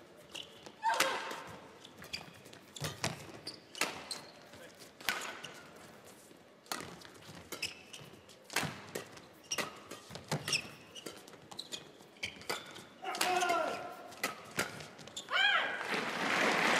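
Badminton rackets striking a shuttlecock in a long rally: a run of sharp hits about a second apart, ringing in a large hall. A few short pitched squeaks or calls come near the end.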